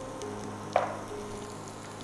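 Chopped onions and garlic frying in butter in a pan: a soft, steady sizzle, with one brief louder sound about three-quarters of a second in.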